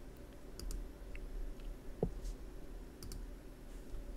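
A few faint, scattered clicks from a computer keyboard and mouse over a low steady hum.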